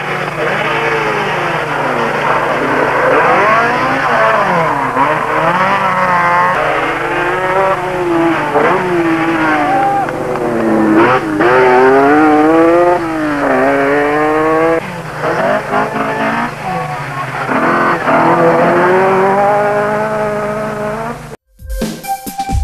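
Late-1970s rally cars passing at speed on a stage, their engines revving hard and dropping back again and again through gear changes, heard on old film sound with a steady low hum underneath. The sound cuts off suddenly near the end.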